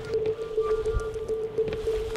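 Background music: one sustained tone held steadily, with faint higher notes entering about halfway through.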